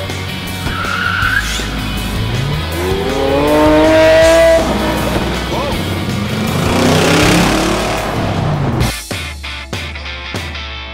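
Sports-car engines revving hard as cars accelerate away one after another. The pitch rises steeply in two runs, the first and loudest about three to four seconds in, the second a few seconds later. Music with a beat takes over near the end.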